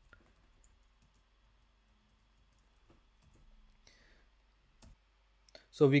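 Sparse faint clicks of computer typing, with one sharper click about five seconds in.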